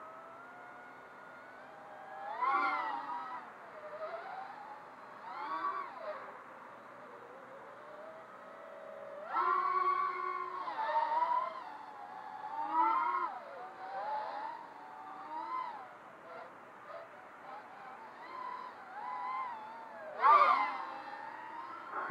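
Eachine Wizard X220 racing quadcopter's brushless motors whining in flight, the pitch rising and falling with the throttle. There are several louder punches; one about halfway through holds a steady pitch for about a second.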